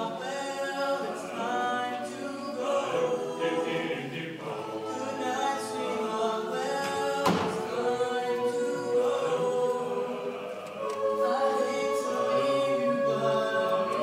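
Mixed-voice high school choir singing a cappella in close harmony, with long held chords. A single sharp knock sounds once about seven seconds in.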